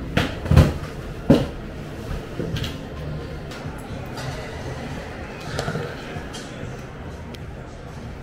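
Hard clicks and knocks of a watchmaker's tool case and tools being handled on a shop counter: three sharp ones in the first second and a half, then lighter taps, over a low room murmur.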